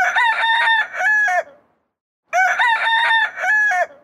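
A rooster crowing cock-a-doodle-doo twice, each crow about a second and a half long with a silent gap between. The two crows are the same recorded crow played twice.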